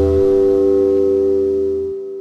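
The final chord of a Les Paul-style electric guitar ringing out and held. The deepest notes drop shortly after the start and cut off near the end, leaving the chord to die away.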